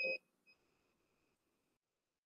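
A short, faint electronic beep at the start, then a fainter beep of the same pitch about half a second in that holds as a faint tone and cuts off shortly before the end, leaving dead silence.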